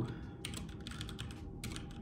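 Typing on a computer keyboard: a quick run of key clicks starting about half a second in.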